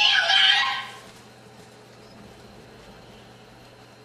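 Young karate students shouting loudly for about a second, the high voice rising in pitch, as they call out the name of the kata, Heian Godan, before starting it. After that only a quiet room with a steady low hum.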